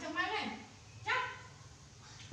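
Baby macaque calling twice in high-pitched squeals: one wavering call of about half a second at the start, then a shorter, higher squeal about a second in.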